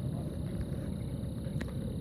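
Steady low rumbling outdoor background noise with no distinct events.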